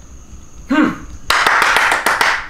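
A man clapping his hands quickly, a fast run of sharp claps starting a little past the middle and lasting about a second.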